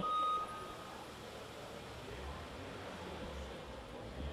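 A thin, steady high beep that stops within the first second, followed by quiet room noise with a faint low rumble starting about halfway through.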